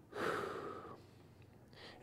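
A man's slow, controlled breath while holding a prone exercise position: one audible breath starting right at the beginning and fading out by about a second in, with a faint intake of breath near the end.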